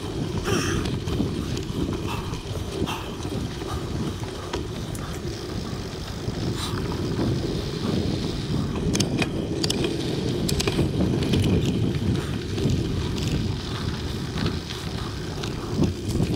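Mountain bike riding along a dirt singletrack: a steady low rumble of knobby tyres rolling over dirt, mixed with wind on the microphone, and scattered sharp clicks and rattles from the bike.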